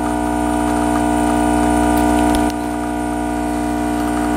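Espresso machine pump humming steadily during a shot extraction; the hum steps down slightly in level about halfway through.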